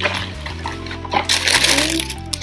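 Tissue wrapping paper crinkling and rustling as it is pulled open in a boot box, over background music with steady low notes.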